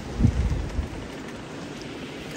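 Wind buffeting and handling noise on the microphone in a snowstorm: a short low rumble just after the start, then a steady faint hiss of wind.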